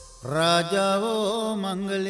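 A singer in a Sinhala pop song holds one long note. It starts about a quarter second in with a slide up into pitch and wavers in the middle.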